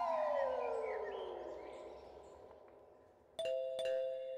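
A doorbell chimes, ding-dong, about three and a half seconds in, two notes struck in quick succession. Before it, a falling musical tone fades away.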